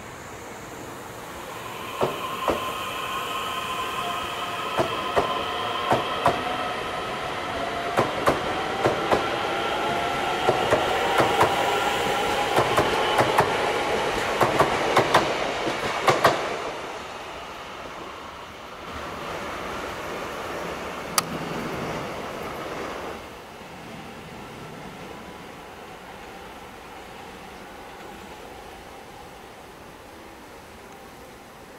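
Korail ITX-Saemaeul electric multiple unit passing close by: wheels clack over rail joints in quick pairs under a steady high whine, for about fourteen seconds. It then dies away as the last car goes by, with a softer rumble and one last clack a few seconds later.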